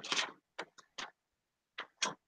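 Sheets of paper rustling in several brief, separate bursts as they are leafed through in a file folder.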